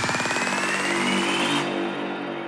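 Electronic psytrance music at a breakdown: a fast stuttering synth with rising sweeps, the high end cutting off suddenly about one and a half seconds in, leaving sustained pad tones fading away.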